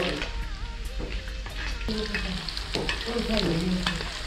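Pieces of pork intestine sizzling as they deep-fry in oil in a large wok, with a metal spatula stirring them and scraping and tapping the wok several times.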